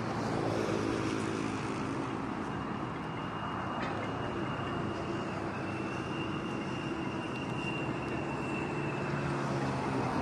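Steady road traffic noise, a continuous rumble of vehicles with a faint high whine in the middle.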